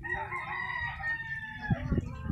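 A rooster crowing once: one long call lasting most of two seconds, dipping slightly in pitch as it ends, with a couple of low knocks near the end.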